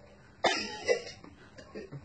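A person's cough about half a second in, fading into faint voice sounds.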